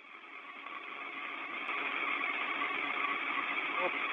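Hiss of an open space-to-ground radio voice link, swelling over the first two seconds and then holding steady, just ahead of a voice transmission.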